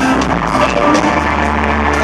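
Live band playing a loud vamp, heard from within the audience, with long held low notes that swell about a second in. Faint crowd noise underneath.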